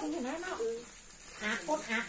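People talking in short phrases, with a pause near the middle, over a steady high-pitched hiss.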